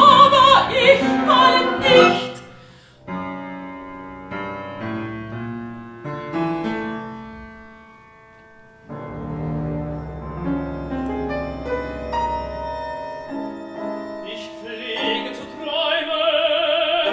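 Opera music: a singer's voice with wide vibrato for the first two seconds, then a quieter instrumental passage of separate held notes, with low sustained notes underneath. A singing voice with vibrato returns near the end.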